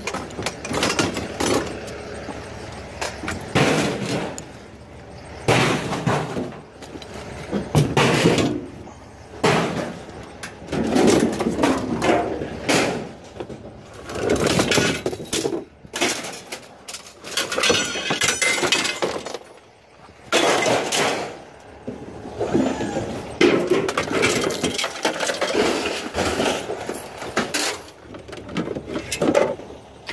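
Scrap metal, including lengths of metal tubing, being pulled out of a pickup truck bed and thrown down: repeated irregular clanging and crashing impacts, some in quick clusters.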